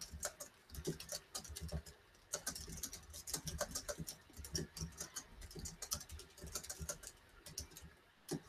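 Quick, irregular light taps and clicks of a loaded watercolor round brush being tapped to flick crimson paint spatter onto the paper.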